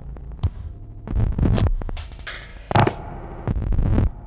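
Experimental electronic music: irregular throbbing low synth bass pulses with scattered sharp clicks and bursts of noise. The loudest burst comes about three-quarters of the way through.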